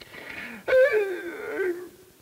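A man sobbing theatrically: a breathy gasp, then a long wavering moan that slides down in pitch.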